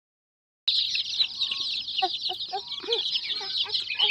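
A flock of young chicks cheeping nonstop, many high, short peeps overlapping into a continuous chorus that starts about half a second in.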